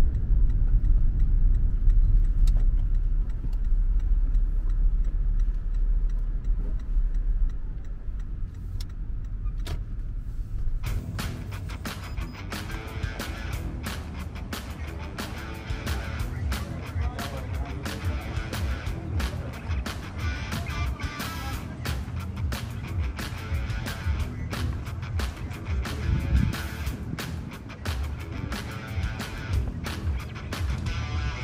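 Steady low rumble of road noise inside a moving Toyota's cabin. About eleven seconds in it gives way to background music with a strummed guitar and a beat.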